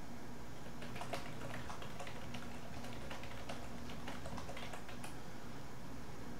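Computer keyboard being typed on: a run of quick, irregular key clicks.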